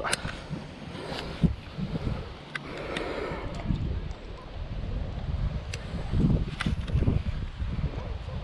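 Wind buffeting the microphone as an uneven low rumble, with a few short, sharp clicks scattered through.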